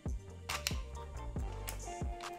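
Several sharp clicks as an AR-15 pistol's arm brace is swung over and folded on its folding stock adapter, with background music underneath.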